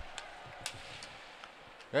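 Ice hockey rink ambience during live play: a low, steady crowd-and-rink hum with a few faint clicks of sticks and puck on the ice.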